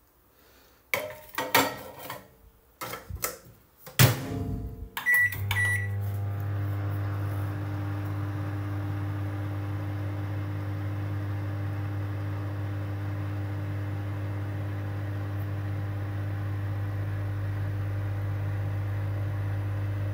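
Knocks and clatter as a plate goes into a microwave oven and the door shuts with a loud thump about four seconds in. A few short keypad beeps follow, then the microwave starts running with a steady low hum.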